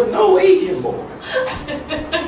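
A man talking and chuckling, with bits of laughter.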